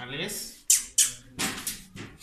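A white kitten crying out in protest while being held down for handling, a wavering call followed by two sharp, hissy bursts about a second in.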